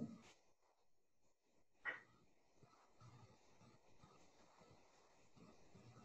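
Near silence: room tone, broken by one short, sharp click about two seconds in.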